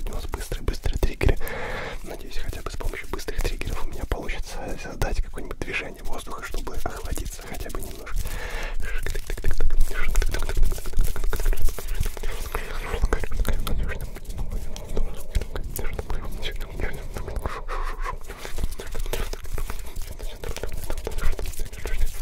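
Close-miked, unintelligible ASMR whispering into a pair of microphones, with many crisp clicks and hand rustles right at the mics. It gets louder for a few seconds around the middle.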